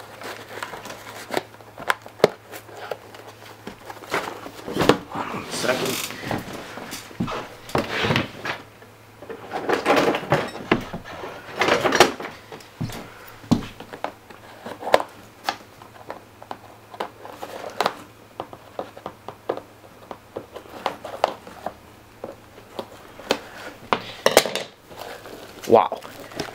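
Cardboard and packaging being handled as a taped white box is cut open with scissors: irregular rustling and sharp clicks, in louder bursts about five seconds in, around ten to twelve seconds and near the end, over a faint low hum.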